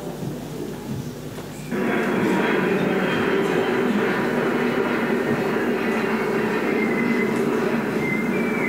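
Recorded vehicle sound effect: a steady rumble that cuts in suddenly about two seconds in and holds.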